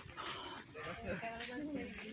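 Faint, distant voices talking.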